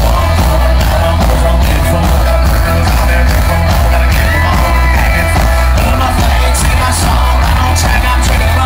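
Live country band playing loud, with heavy bass and steady drums under a male lead vocal singing into the microphone.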